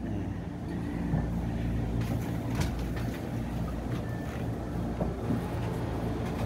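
Steady low mechanical hum, like a motor or engine running, with a few faint knocks.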